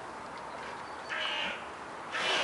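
A crow cawing once about a second in, a single harsh call lasting about half a second.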